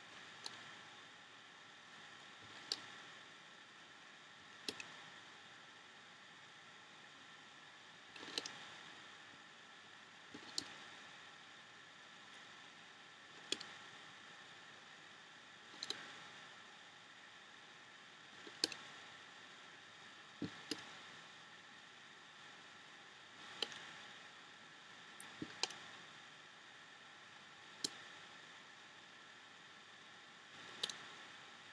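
Sharp, faint clicks of rubber bands being stretched and snapped onto the pegs of a plastic Rainbow Loom, one every two to three seconds and sometimes in quick pairs, over a steady faint hiss.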